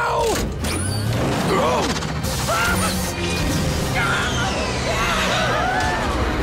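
Cartoon action soundtrack: a dramatic music score under mechanical clanks and crashes, with many short rising-and-falling squeals and cries over it.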